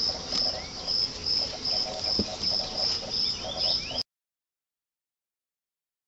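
Insects chirping in a steady high pulse about three times a second, over a lower pulsing trill, with a single soft thump about two seconds in. The sound cuts off to silence about four seconds in.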